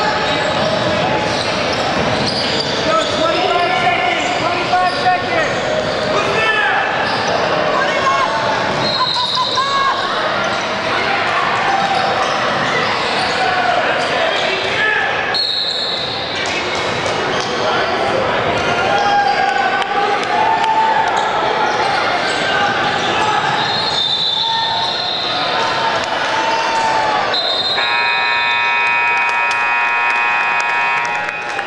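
Youth basketball game in a large echoing gym: a ball bouncing on the hardwood, sneakers squeaking, and unintelligible shouts from players and spectators throughout. A held tone sounds for about two seconds near the end.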